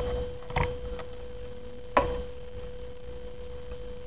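A steady, thin, high tone, with a few sharp clicks: one right at the start, one about half a second in, a faint one at one second, and a loud one about two seconds in.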